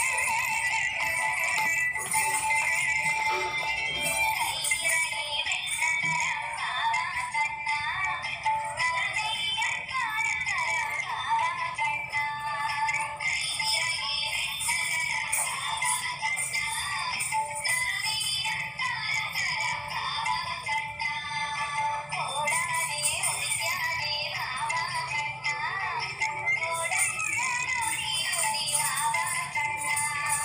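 A recorded devotional song playing throughout: a singing voice over instruments, thin and tinny with little bass.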